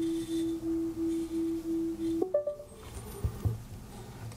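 iPad Pro Face ID setup sounds: a low tone pulsing about three times a second while the face scan runs. It stops about two seconds in with a short, higher chime as the scan completes.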